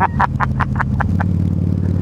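Harley-Davidson V-Rod Muscle's V-twin with Vance & Hines slip-on exhausts running steadily, heard through a microphone inside the rider's helmet. A short run of laughter comes in the first second.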